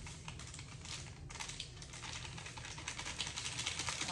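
Crystal-growing powder pouring from a paper packet into a bowl of hot water: a dense, rapid crackle of tiny clicks, thickening partway through, as the crystals hit the water and pop while they dissolve.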